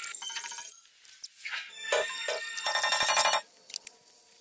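A film soundtrack played back at high speed, so its music and sounds come out raised in pitch as quick, chirpy tones. There are short breaks about a second in and again near the end.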